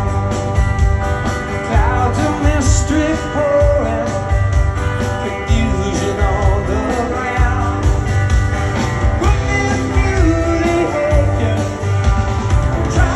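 Live rock band playing a song: a man singing lead over electric guitar, bass and a steady drum beat, heard through the concert sound system from the audience seats.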